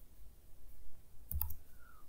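Computer keyboard key press: a faint click at the start and a sharper double click with a low thud about one and a half seconds in.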